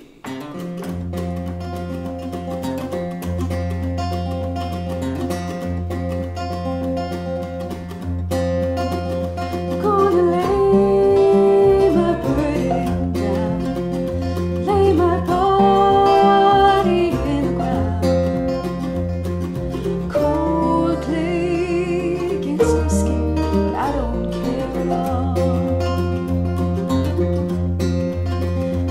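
Acoustic string band playing a bluegrass-style tune on upright bass, acoustic guitar, mandolin, banjo and dobro, starting about a second in. Steady bass notes sit under quick plucked picking, with some slide notes from the dobro gliding in pitch.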